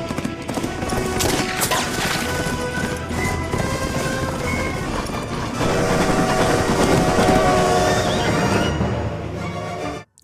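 Film soundtrack of a horse galloping, hoofbeats under a music score, getting louder about halfway through.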